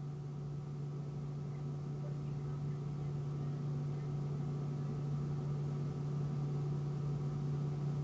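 Steady low machine hum with a strong low tone and a ladder of fainter overtones, unchanging apart from a slow slight rise in level.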